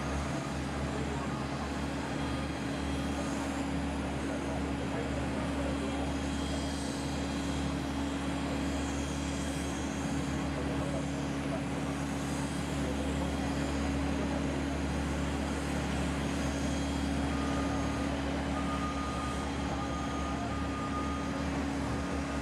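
Jet airliner engines running at the airport: a steady low drone that neither builds nor fades, with a faint thin tone coming in near the end.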